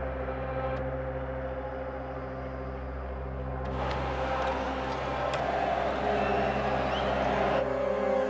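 A sustained, low, tense drone of background score. From about four seconds in, stadium crowd noise rises under it and cuts off shortly before the end.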